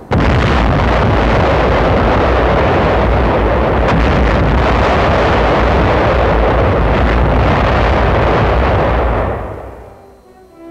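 Massed artillery fire from 155 mm Long Tom guns: a dense, continuous roar of firing and shell bursts that starts abruptly, with a sharper crack about four seconds in, and fades out near the end.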